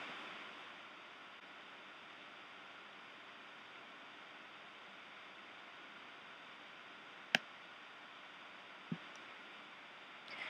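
Faint steady hiss of room tone, with one sharp click about seven seconds in and a soft low thump near nine seconds.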